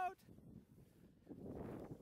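Skis sliding and scraping over snow, a rough irregular hiss that comes in about one and a half seconds in.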